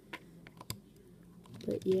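Light clicks of hard LEGO plastic as a mini-doll is handled and set into a built LEGO stand: three or four sharp ticks within the first second.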